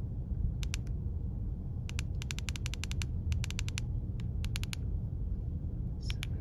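Keypad buttons of a Baofeng UV-5R handheld radio clicking as they are pressed during front-panel programming: a few single clicks, then quick runs of several presses in the middle, over a steady low rumble.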